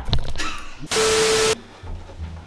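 Camera handling bumps and rustling, then a half-second burst of hiss with one steady tone in it. The burst starts and cuts off sharply, like an edited-in static transition effect.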